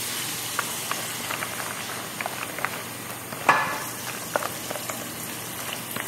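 A slotted spoon stirring cooked penne coated in a mayonnaise-based deviled egg filling in a bowl: a steady wet mixing noise with small clicks of the spoon against the bowl, and one louder knock about halfway through.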